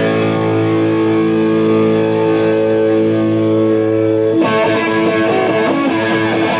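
Live punk rock band's distorted electric guitars holding one ringing chord for about four seconds, then cutting off suddenly into a faster picked riff with bass under it.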